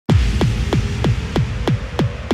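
Hardtek/tribecore kick drum beating fast and steady, about three kicks a second, each kick sweeping sharply down in pitch, over a low hum.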